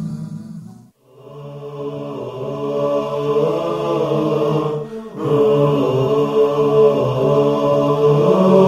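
Guitar-backed promo music fades out in the first second, then a vocal chant-style theme tune starts, with held, layered sung notes and a brief break about five seconds in.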